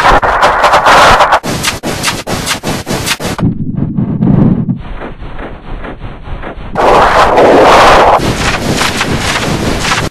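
Harsh, heavily distorted audio effect: a loud noisy blare chopped by rapid stuttering clicks. Around the middle it drops to a duller, lower rumble, then swells back to a loud blare about seven seconds in.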